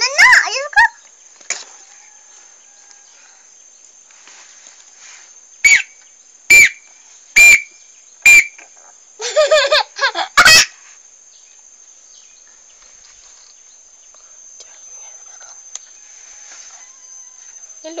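A child blowing a plastic toy whistle: four short, even toots a little under a second apart, then a longer wavering squeal from it. A brief child's squeal comes at the very start.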